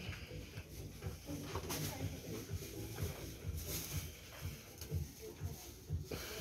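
Shop background: faint voices and music, with no clear single sound standing out.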